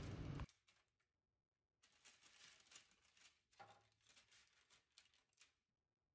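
Near silence, with two faint ticks.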